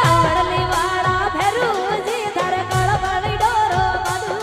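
A woman singing a Marwari devotional bhajan through a microphone, her melody sliding and ornamented after a long held note, over instrumental accompaniment with a steady beat.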